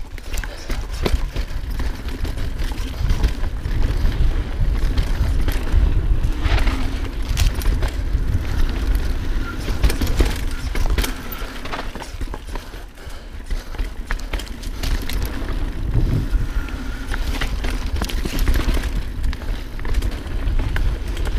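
Mountain bike riding fast down dirt singletrack: the tyres run over dirt and roots while the bike rattles and knocks with many sharp clacks. Heavy wind rumble on the microphone runs underneath.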